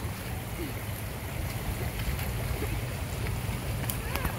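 Shallow creek rushing and splashing over rocks and boulders, a steady watery hiss.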